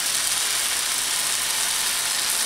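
Steady sizzling hiss of food frying in a hot pan on the stove.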